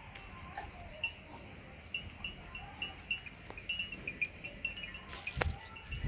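Farmyard ambience with livestock about: short high-pitched notes repeating irregularly over a low steady background, and a sharp knock near the end.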